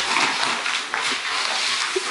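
A dog's noises during rough tug-of-war play, with scuffling on a wooden floor.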